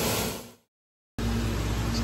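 Blanchard rotary surface grinder grinding steel knife blanks under flowing coolant, a steady rushing noise that fades out about half a second in. After a brief gap of total silence, a steady machine hum with a low tone starts again.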